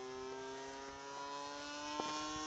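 Electric motor and propeller of a radio-controlled P-51 Mustang model plane whining steadily in flight, the pitch drifting slightly lower.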